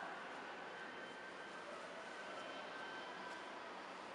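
Faint, steady hiss of room background noise, with no distinct events.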